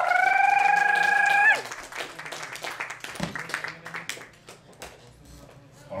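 A high, drawn-out vocal whoop from someone in the audience, held for about a second and a half and then breaking off. Scattered hand claps run under it and thin out over the next few seconds.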